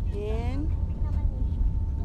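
Steady low rumble of wind on a phone microphone, with a woman's voice briefly in the first moment.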